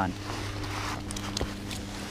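Handling noise while a crappie is taken off an ice-fishing line and laid on the ice: a rustle of clothing and gear, then a few light clicks and taps.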